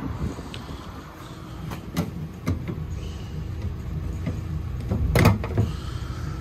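Scattered knocks and thuds in a van's steel load area, the loudest about five seconds in, over a low rumble that builds from about two seconds in.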